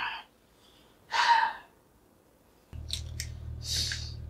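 A person's breathy exhale about a second in. Past the middle a low steady drone sets in, with a few light clicks and a short rustle near the end as a plastic Blu-ray case is slid off a shelf.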